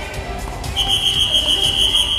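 A loud, shrill, steady signal tone begins just under a second in and holds for about a second and a half, over background music.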